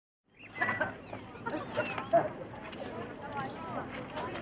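Birds chirping in short repeated calls, with a woman's voice asking "where" about a second and a half in.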